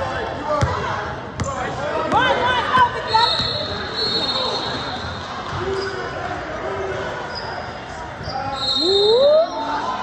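Basketball game in a gym hall: a ball bouncing with a couple of sharp knocks near the start, high sneaker squeaks on the court floor, and shouting voices echoing in the large room.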